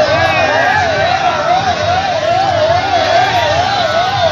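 An electronic siren warbling steadily, its pitch rising and falling about three times a second, over the voices of a crowd.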